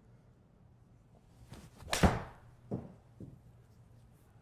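A 7-iron shot struck in an indoor golf simulator bay: one sharp, loud club-on-ball impact about two seconds in, followed by two fainter knocks within the next second.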